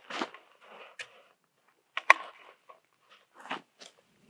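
Footsteps crunching on gravelly dirt, then scuffs, knocks and cloth rustle as a sandbag and rifle are set on a metal post barricade and a person kneels behind it. The sharpest knock comes about two seconds in.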